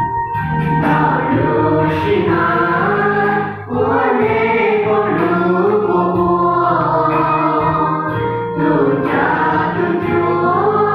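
A church choir of young voices singing a hymn together, coming in about a second in, with short breaths between phrases near four seconds and eight and a half seconds.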